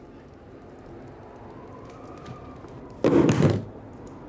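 A pistol thrown up from under the floorboards lands with a single heavy thud on the wooden floor about three seconds in, after a stretch of faint room tone.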